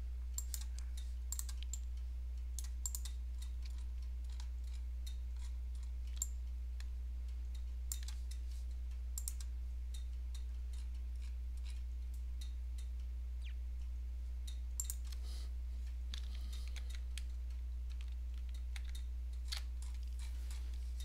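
Irregular clicks of a computer mouse and keyboard, often two close together, over a steady low hum.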